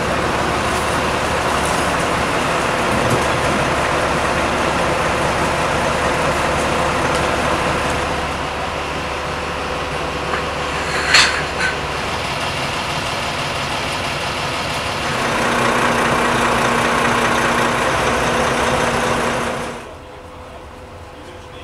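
A vehicle engine running steadily, with a single sharp clink about halfway through. The background shifts slightly a couple of times.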